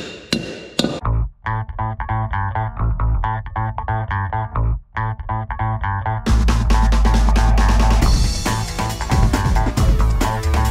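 Three sharp hammer strikes on a steel wheel stud being driven into a trailer hub drum in the first second. Then background music with a steady beat takes over, growing louder and fuller about six seconds in.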